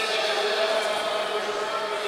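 Voices echoing in a large sports hall, with a held, chant-like sound of several pitches running through.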